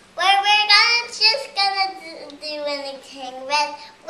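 A young girl singing a tune in short phrases, with drawn-out high notes.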